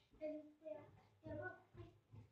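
A child's voice faintly singing in a few short phrases.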